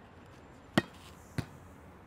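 A volleyball striking twice, two sharp thuds a little over half a second apart, the first louder.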